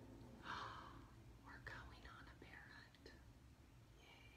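Faint whispering, a few soft unvoiced words, over a low steady room hum.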